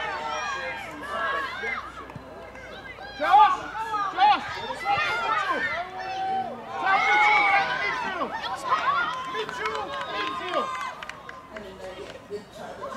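Several overlapping voices shouting and calling out, none of the words clear, with the loudest shouts about three and a half seconds in and again around seven seconds.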